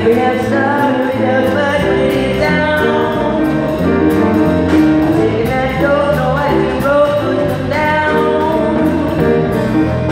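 A woman singing a melody into a microphone with a live band, over a drum kit with cymbal crashes every couple of seconds and sustained low accompaniment.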